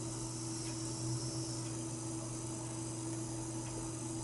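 Quiet room tone with a steady low hum; no distinct sound stands out.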